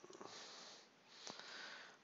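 Near silence with two faint breaths close to the microphone, one after the other, and a faint click about a second in.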